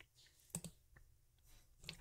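Near silence with a few faint, short clicks, about half a second in, near one second in, and just before speech resumes.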